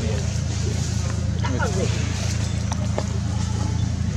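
Steady low hum, with a short stretch of faint voice about one and a half seconds in.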